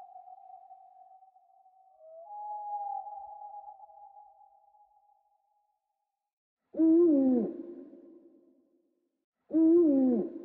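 Owl calls with heavy echo. A long steady tone fades out over the first few seconds, and a fainter one follows about two seconds in. Near the end come two loud hoots about three seconds apart, each falling in pitch and trailing off in echo.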